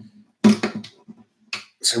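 A few quick clicks and taps of small guitar parts being handled on an acoustic guitar's top, by the bridge where a piezo pickup sits, followed by a man's voice.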